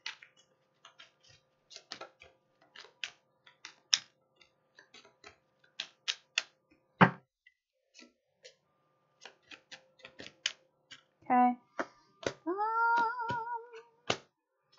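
Tarot cards being shuffled and handled, giving irregular sharp clicks and flicks of card on card, with one loud snap about halfway. Near the end a person makes a short vocal sound and then a drawn-out hum with a wavering pitch.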